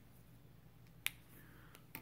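Two sharp clicks, a loud one about a second in and a softer one just before the end, over a faint steady low hum.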